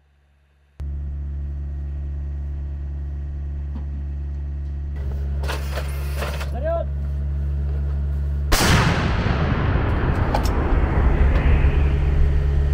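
A steady low engine drone, with some metallic clatter a little past the middle. About eight and a half seconds in, a TRF1 155 mm towed howitzer fires: one sudden, very loud blast whose rumble and echo carry on for several seconds.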